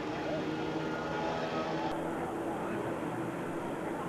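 A steady engine hum that fades after about two and a half seconds, over crowd chatter.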